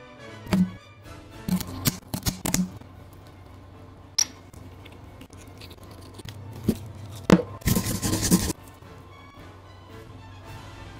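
Scissors cutting through a sea urchin's spiny shell: sharp snips and cracks in two clusters, the second ending in a longer rasping burst about eight seconds in, over background music.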